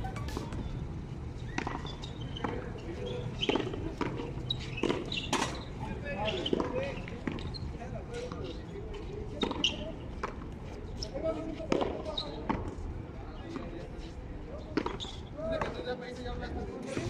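A frontón handball rally: a series of sharp smacks at irregular intervals as the ball is hit by hand and slaps off the wall and court floor, with voices of players and onlookers in the background.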